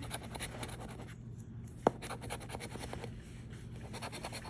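A coin scratching the coating off a paper scratch-off lottery ticket in quick rubbing strokes. The scratching eases briefly a little over a second in, and there is a single sharp click a little before the two-second mark.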